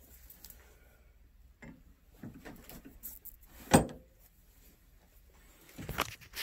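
Quiet handling noise: soft scattered rustles and knocks, with one sharp, loud knock a little past halfway and a smaller one near the end.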